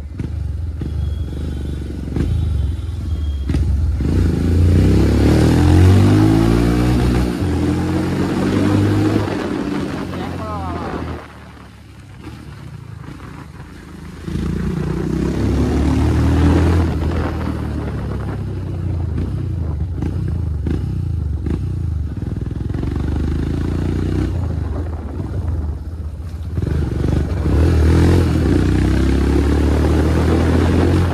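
Royal Enfield Scram 411 single-cylinder motorcycle engine running, its pitch rising and falling with the throttle. It goes quieter for a few seconds near the middle.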